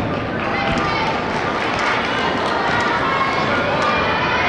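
Steady chatter of many people talking at once in a large hall, with no single voice standing out.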